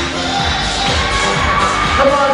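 A recorded song playing loudly, with a crowd cheering over it.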